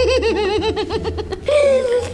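A young girl laughing in a fast, high-pitched run of giggles, ending on a short held note.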